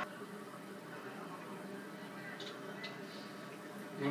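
Faint, steady background ambience of a televised golf broadcast played through a TV speaker during a pause in the commentary, with a couple of faint clicks.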